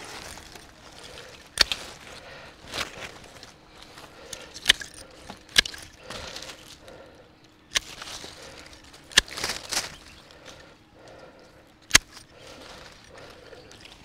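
Hand pruning shears snipping through grapevine canes: a handful of sharp snips spread out with gaps of a second or more, and leaves rustling as the branches are handled between cuts.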